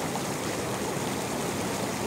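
Hot tub water bubbling and churning, a steady rushing noise with no breaks.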